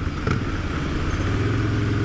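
Motorcycle engine running at a steady pace while riding, with a constant rush of wind noise over it.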